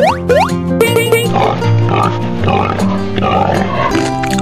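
Cheerful children's-style background music. About a second in a short sparkle sound effect plays, followed by a run of cartoon pig grunts over the music.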